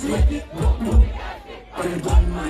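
Dancehall music played loud over a PA with a heavy bass beat, and a crowd shouting along. The beat drops out for about half a second near the end, then comes back in.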